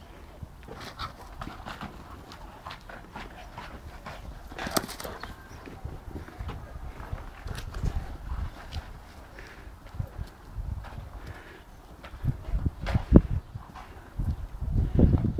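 A dog chewing and crushing a torn thin-plastic beach ball: irregular crackles and clicks of the plastic throughout, with a few louder thumps near the end.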